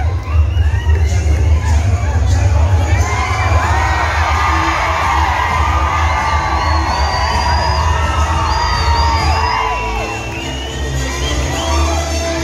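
A packed crowd cheering and shouting, many voices whooping at once, close around the microphone, over loud music with a heavy bass.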